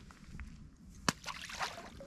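A small fish released by hand into the water: a sharp slap about a second in, followed by a brief splash.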